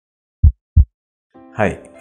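Heartbeat sound effect: one low double thump, lub-dub, in the first second. Background music starts just after, and a man says "Hi" near the end.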